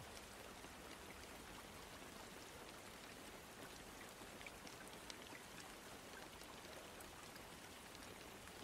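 Faint rain: a steady soft hiss with scattered small drop ticks.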